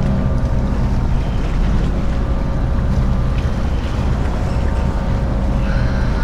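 Steady low drone of a car ferry's diesel engines, with wind buffeting the microphone.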